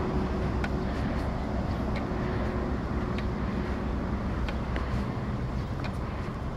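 Street traffic noise: a steady low rumble of road vehicles, with a faint steady hum through the first half. Light ticks come now and then.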